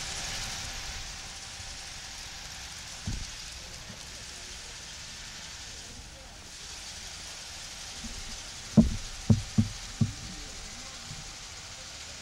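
Steady outdoor hiss with faint, indistinct voices, broken by a dull low thump about three seconds in and then four muffled thumps in quick succession around nine to ten seconds in.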